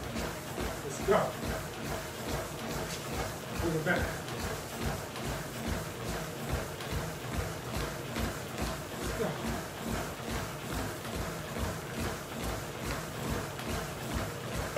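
Running footfalls on a treadmill deck, an even rhythm of about three steps a second.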